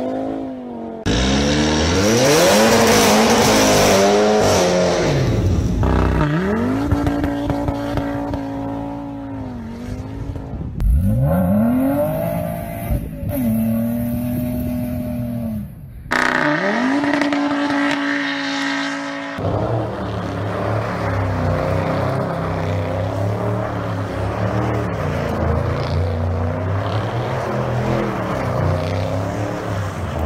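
Audi quattro cars' engines revving up and down again and again as they slide and spin on snow. The sound changes abruptly every few seconds. For the last third it is a denser, steadier engine sound.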